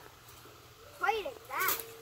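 A quiet second, then two short cries from people's voices, each rising and falling in pitch, about a second in.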